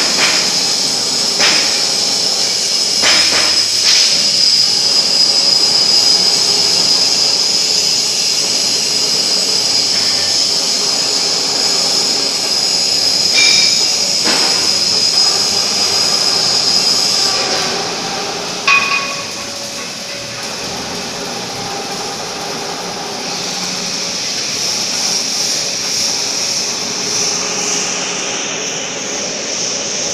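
Column-and-boom welding manipulator running, its carriage and boom travelling on the column and rail. The drive gives a steady high whine with a few clunks and short squeals. The whine drops a little past halfway and builds again near the end.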